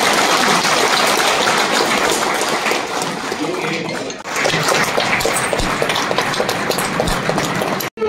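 Audience applauding in a hall, a dense patter of many hands clapping. It dips for a moment about four seconds in, then carries on until it cuts off suddenly near the end.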